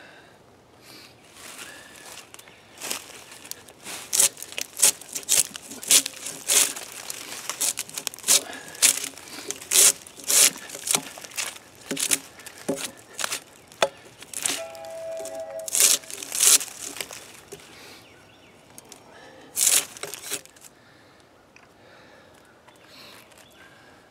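Draw knife stripping bark from a pine log: a run of sharp scraping, tearing strokes, about one or two a second, each peeling off a strip of bark. The strokes pause near the end, then come a last couple.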